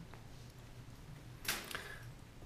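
Quiet room tone with a faint, steady low hum. About one and a half seconds in there is a brief, sharp rustle, likely a hand reaching in with a pen over paper.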